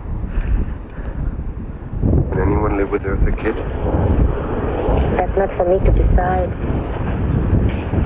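Wind rushing over the microphone of a ride camera as a low, steady rumble, with a person's voice coming in from about two seconds in.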